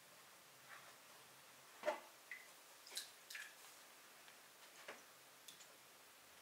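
Water dripping from a hand papermaking mould of wet pulp into a plastic tub as a sponge dabs the underside of the screen: a handful of faint, separate drips and squelches, the loudest about two seconds in.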